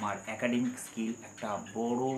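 A man's voice talking in short phrases, over a steady high-pitched whine that runs throughout.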